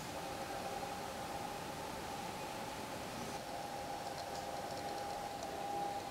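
Room tone: a steady hiss with a faint steady hum, and light faint ticking in the second half.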